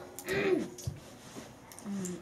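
A child's voice making one short sung or vocalized sound that rises and falls, about half a second in, then a few faint clicks of small construction pieces being handled.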